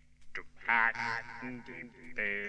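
An electronically processed voice from a lo-fi synthesizer record comes in after a quiet gap about a third of a second in. Its pitch wavers and bends.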